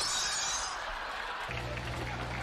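Glass shattering, the crash dying away over the first second, then a steady low engine drone starting about one and a half seconds in, heard through the TV clip's soundtrack.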